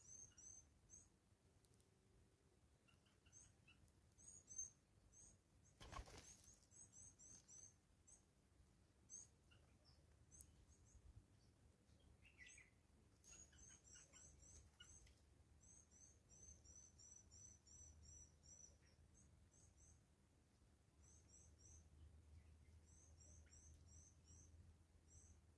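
Faint, very high-pitched chirps of blue waxbills, short notes in quick runs of two to five that come again and again. About six seconds in there is one short knock.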